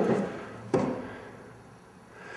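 Two dull thumps about three-quarters of a second apart, each fading quickly.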